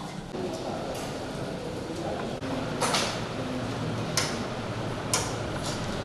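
Indistinct background voices and room noise, with three sharp clicks or knocks about a second apart in the second half.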